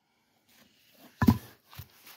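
A thick, heavy wooden board set down on grassy ground: one dull thud a little past the middle, then a lighter knock.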